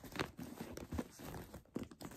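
Plastic wrapping crinkling and rustling several times in short, irregular bursts as hands handle a new quilted handbag and work its flap open.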